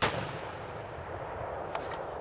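A single gunshot fired at a buck deer: a sharp crack at the start, then its echo rolling on for about two seconds. A faint click near the end.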